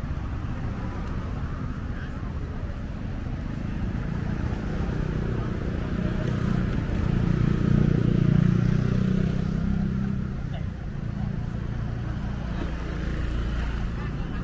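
Road traffic with a motor vehicle passing close by: its engine sound builds, peaks about eight seconds in, then fades away.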